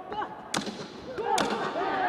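Two sharp punches of boxing gloves landing, a little under a second apart, the second the louder, with voices shouting around them.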